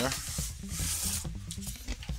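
Paper and cardboard rustling as a folded instruction sheet is pulled out of a cardboard box, loudest from about half a second to just over a second in.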